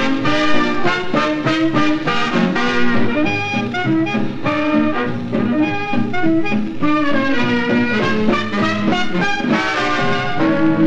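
A 1943 78 rpm shellac record of a swing-era dance orchestra playing a foxtrot, an instrumental passage without vocals.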